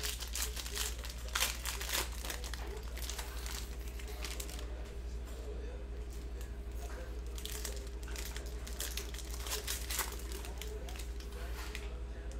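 Plastic cello wrapper of a Panini Prizm basketball card pack being torn open and crinkled by hand, in spurts during the first two seconds and again from about seven to ten seconds in.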